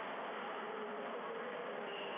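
Steady background noise with a faint buzz in it, even in level throughout; no ball or racquet strikes.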